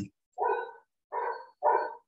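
A dog barking three times in quick succession.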